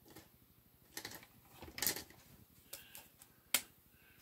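Felt-tip markers being handled on a desk: a few light clicks and taps, and one sharp click a little before the end.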